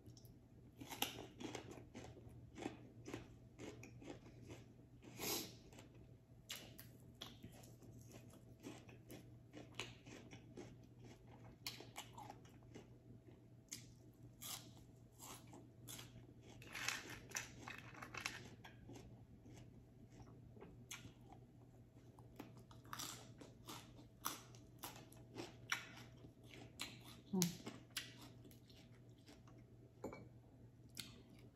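A person chewing and crunching raw leafy greens and papaya salad close to the microphone: quiet, irregular crisp crunches and mouth clicks, sometimes several a second.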